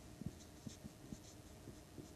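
Marker pen writing on a whiteboard: faint strokes and several small ticks as the tip touches down and lifts off.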